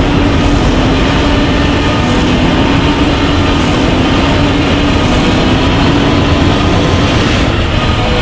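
Recreated Godzilla roar: one long, loud, rough roar without a break, with a steady low pitch that rises slightly.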